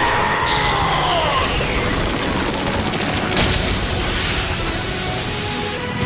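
Anime battle soundtrack: dramatic score over dense rumbling and booming effects, with a falling cry or swoosh in the first second or so and a sharp impact about three and a half seconds in.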